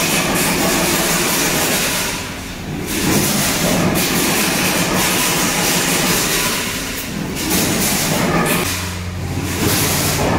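Chain-link wire mesh rattling and scraping against a concrete floor as it is handled, continuous with short lulls, over a steady mechanical rumble; a low hum comes in near the end.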